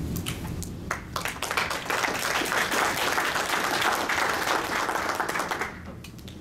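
Audience applauding: a few scattered claps at first, then about four seconds of steady clapping that stops suddenly near the end.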